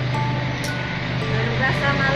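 A steady low motor-vehicle engine hum with road noise, likely a vehicle passing close by.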